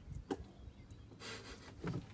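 Quiet, with a few faint clicks and a brief soft rustle, and no engine cranking or running: the golf cart fails to start, its battery too weak to turn the starter.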